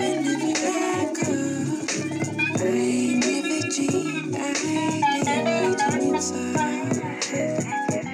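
Electric guitar played along with a recorded neo-soul track of bass, drums and keys.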